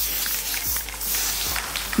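Aerosol can of temporary hair-colour spray hissing steadily as it is sprayed onto a motorcycle's bodywork.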